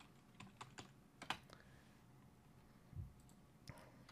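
Faint computer keyboard keystrokes, a few scattered clicks in the first second and a half and one or two more near the end, with a dull knock about three seconds in.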